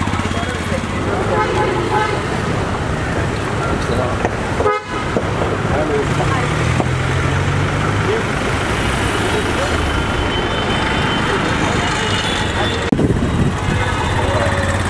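Busy street traffic with vehicle horns tooting and people talking over the steady noise of engines.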